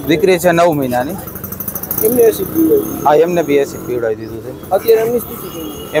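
A man speaking Gujarati into reporters' microphones, in short phrases with brief pauses.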